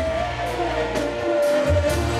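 Live banda sinaloense music. A long high note is held for most of the stretch over a steady tuba bass, with cymbal hits.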